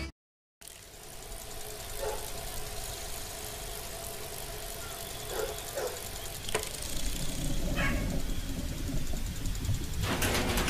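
After a brief gap of silence, the background sound of a fabrication workshop: a steady low rumble of machinery with a few scattered short knocks and clatters.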